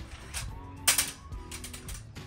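Metal clinks and clanks as a folding steel fire stand is set up, its thin rods and plate knocking together, loudest just before a second in, with a few lighter clicks after.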